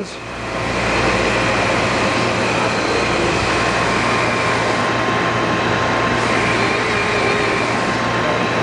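Rush Model 380 drill grinder running, its wheel grinding a drill point held in the chuck. A steady grinding hiss over the motor's hum builds over the first second, then holds.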